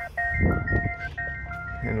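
Electronic warning chime from inside a Peugeot 3008: a simple pattern of pure beeping tones that repeats, with a brief gap a little over a second in. A couple of dull soft thumps come about half a second in.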